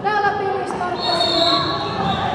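Speech: a man giving live commentary in Finnish.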